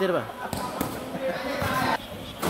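A volleyball bouncing on the court floor with a few light knocks before a serve, under background voices echoing in a large hall.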